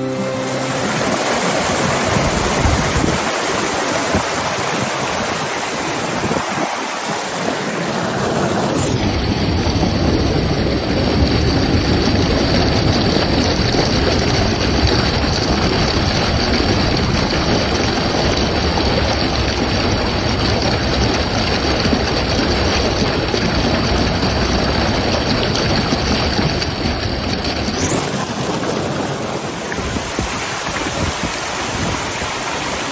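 Steady rush of water from a rocky mountain stream and waterfall. The tone changes about nine seconds in and again near the end.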